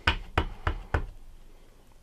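Clear acrylic stamp block carrying a rubber cling stamp, tapped repeatedly onto an ink pad to ink the stamp: four quick knocks about three a second, the later ones softer.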